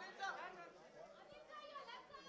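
Faint, off-microphone voices talking and chattering, fading out in the second half.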